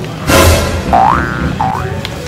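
Comic sound effects laid over background music: a sudden hit about a quarter-second in, then two short rising boing glides.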